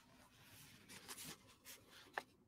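Near silence: quiet room tone with a few faint, brief rustles about a second in and once more near the end.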